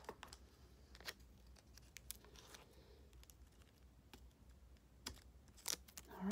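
Near silence with a handful of faint, light clicks and taps from hands handling the contact paper and eyelash decals.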